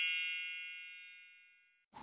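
A bright, bell-like ding sound effect ringing out and fading away over about a second and a half, followed by a moment of silence.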